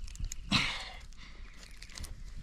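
Fingers picking a small stone out of dry loose gravel: a few small clicks, then a short scraping rustle about half a second in.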